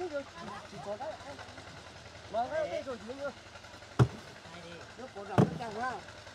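Men's voices talking over hand concreting work, with two sharp knocks about a second and a half apart near the end, from the work on the crushed-stone road bed.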